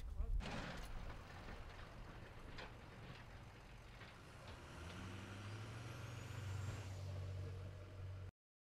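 Faint outdoor sound with a vehicle engine running low and steady, coming in about five seconds in.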